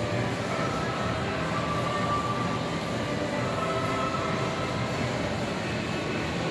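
Steady background hum of a large, mostly empty shopping-mall atrium, with a few faint wavering tones drifting in and out.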